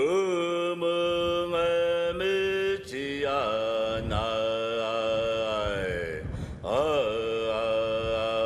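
A chanting voice in long held notes that slide up and down in pitch, in three drawn-out phrases.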